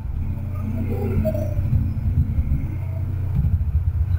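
A steady low rumble, picked up by a phone's microphone, with no speech over it.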